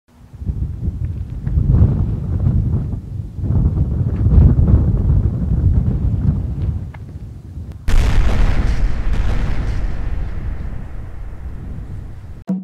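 Deep rumbling in two long swells, then a sudden loud boom about eight seconds in that dies away slowly over several seconds.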